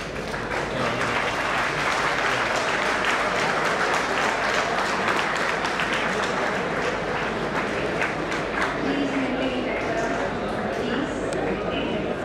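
A hall audience applauding, many hands clapping at once right after the ceremony is declared closed. It builds over the first second and thins a little in the later seconds, with some voices heard through it.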